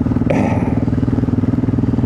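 BMW G650 Xchallenge's 652 cc single-cylinder engine running on the move at a steady, unchanging note with a rapid even beat. A short hiss comes about half a second in.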